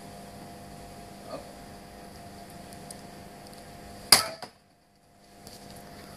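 A sword blade striking a wooden pole target about four seconds in: one sharp, loud crack as the blade bites deep into the wood without cutting all the way through.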